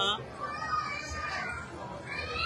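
Indistinct background chatter of several voices in a crowded room, with a fainter higher voice rising and falling about half a second in.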